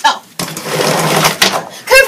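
Large sheet of chart paper rustling loudly as it is handled and lifted off a wall map, after a sharp click at the start.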